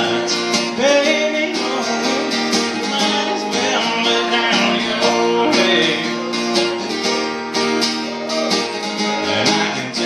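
Acoustic guitar strummed in a steady rhythm, the chords ringing on continuously.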